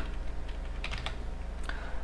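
Computer keyboard being typed on: a few separate keystrokes about a second apart, over a steady low hum.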